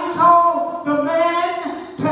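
A solo voice singing a slow melody with long held notes, amplified through a microphone. The voice fades briefly near the end.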